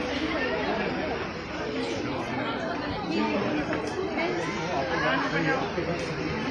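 Several people talking over one another: overlapping chatter with no single clear voice.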